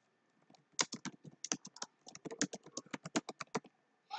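Computer keyboard typing: a quick, uneven run of keystrokes that starts under a second in and goes on until near the end.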